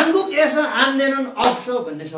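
A man speaking animatedly, with one sharp slap of hands about one and a half seconds in.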